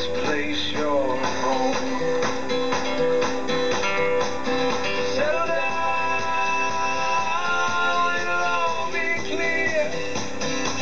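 Folk-pop song with strummed guitar and singing, playing from a Cossor valve radio's loudspeaker, its large capacitors freshly replaced. About five seconds in, long held notes come in and run for several seconds.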